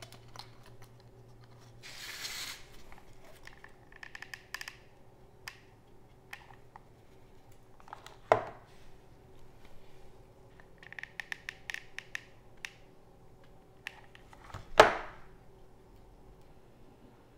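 Quiet close-up handling of small plastic parts and wires on a wooden board: scattered light clicks and scratchy rustles. A sharp knock comes a little past halfway, and a louder one near the end.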